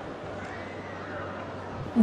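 Steady outdoor background noise from the filmer's recording, with faint distant voices and one faint call that rises and falls in pitch.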